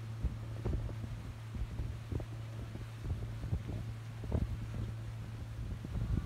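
Motorboat engine running at a steady hum while towing, with wind buffeting the microphone in irregular low thumps.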